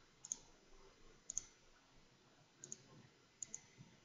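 Computer mouse button clicking: short sharp clicks, mostly in close pairs, four times about a second apart, against near-silent room tone.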